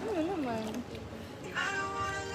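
A person's voice making a wavering, up-and-down vocal sound in the first second, then a held high note from about a second and a half in, with music in the background.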